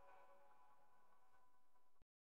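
Near silence: the faint, fading tail of the backing music's held notes, cutting off abruptly at the end.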